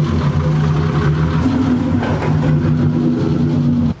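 BMW E30's engine idling steadily, a low, even running note.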